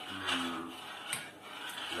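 Metal spoon scraping around a stainless steel saucepan while stirring oats boiling in milk, with a sharp tap against the pan about a second in.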